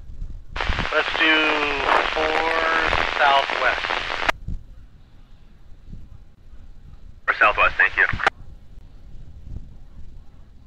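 Two marine VHF radio transmissions: a burst of radio hiss carrying a voice for about four seconds, then a second, shorter one a few seconds later. Each one starts and cuts off abruptly as the squelch opens and closes.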